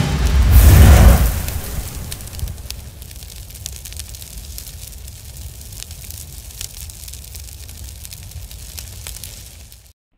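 Explosion sound effect: a loud boom about a second in, then a low rumble with scattered crackles and pops that slowly fades and cuts off just before the end.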